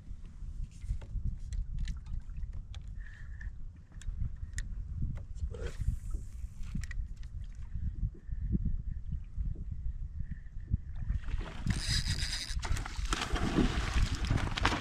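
Wind buffeting a cap-mounted action-camera microphone, a steady low rumble, with scattered light clicks and knocks from gear on the kayak. About eleven and a half seconds in, a louder rushing hiss comes in and lasts over a second.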